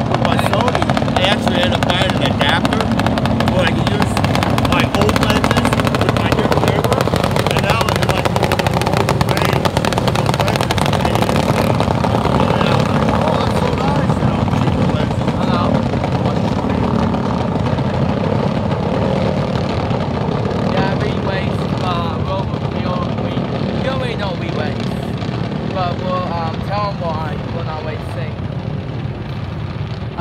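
A pack of racing lawn mowers, their small engines running hard around a dirt oval track. The engines are loud for the first two-thirds and fade toward the end, when voices come through.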